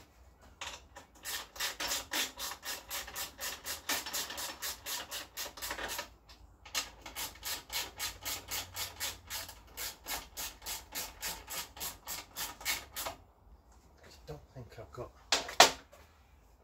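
Ratchet spanner clicking rapidly, about seven clicks a second, in two long runs with a short pause between, as a nut at the top of a Honda Chaly moped's handlebars is tightened. A few small knocks follow, and a single louder knock near the end.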